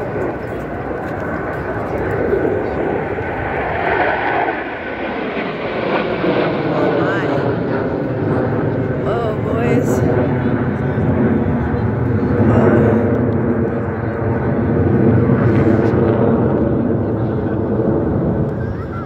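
Jet engine noise from a formation of jet aircraft flying overhead, growing louder through the second half, with crowd voices underneath.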